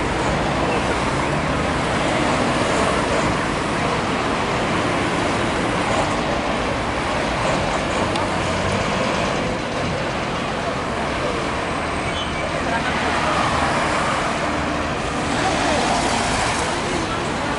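Steady street traffic noise: engines running and cars passing close by, with a continuous low rumble.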